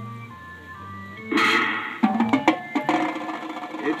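Marching band playing: soft held brass chords, then, about a second in, a sudden loud full-band hit with a cymbal crash, followed by a run of sharp drum hits over the band.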